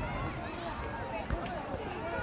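Children's voices calling and shouting across a football pitch during play, with one low thump a little past halfway.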